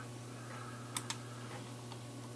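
Two quick computer mouse button clicks about a second in, with a fainter click near the end, over a steady low hum.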